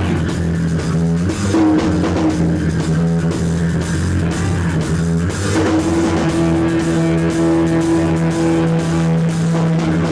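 Hardcore punk band playing live: electric guitars, bass and drum kit, loud and steady with held low notes.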